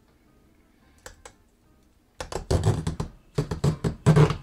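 A vintage Heuck hand-held aluminium fry cutter with stainless steel cutting wires being set over a peeled russet potato and pressed down on it. After a near-quiet first half with a couple of small clicks, a quick run of clicks and knocks begins about two seconds in.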